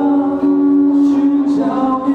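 Two men singing through microphones to an acoustic guitar, holding one long sung note for most of the two seconds.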